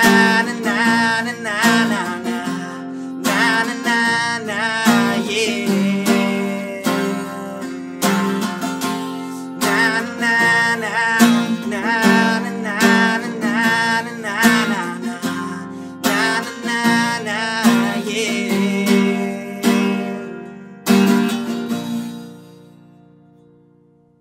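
Fender 12-string acoustic guitar strummed in a steady rhythm under a man's wordless 'na na na' vocal refrain. A final strummed chord about 21 s in rings out and fades away.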